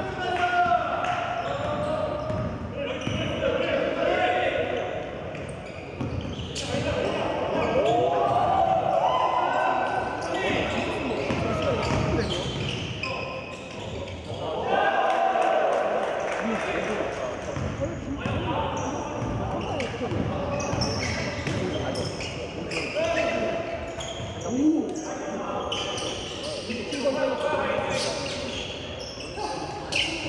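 A basketball bouncing and being dribbled on a hardwood gym floor, with players' shoes and scattered impacts, in an echoing hall. People's voices call out throughout, and the words are not made out.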